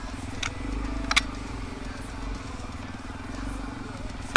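Four-stroke single-cylinder dirt bike engine running at low, steady revs as the bike trickles along a rough trail. Two sharp knocks come through, about half a second and a second in, the second the loudest sound.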